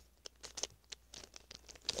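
Faint, scattered clicks and scrapes of a gold Rubik's cube's plastic layers being turned by hand.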